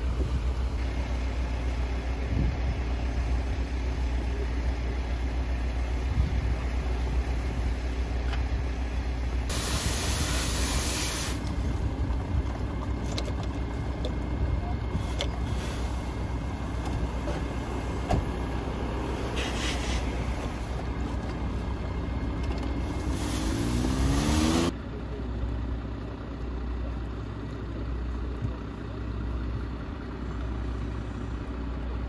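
Fire truck's diesel engine running steadily at idle, with a loud burst of hiss about ten seconds in. Near the end the engine rises in pitch, then the sound drops suddenly.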